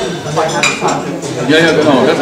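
Crockery and cutlery clinking at breakfast tables, cups and plates knocking with a few sharp chinks, over background conversation.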